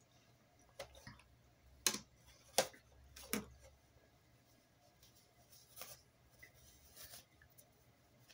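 Small makeup tools and containers being handled: a few faint, sharp clicks and taps, with three louder ones in quick succession about two to three and a half seconds in, then softer rustling near the end.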